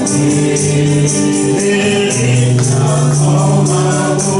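Gospel singing by a group of voices holding long notes, with a tambourine keeping a steady beat.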